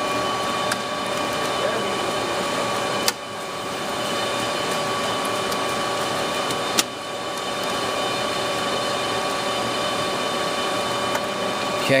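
Steady whirring hum of fans and air handling, with several steady tones in it. Two sharp clicks stand out, about three seconds and seven seconds in, as Molex power connectors are worked loose from the server's power supply blocks.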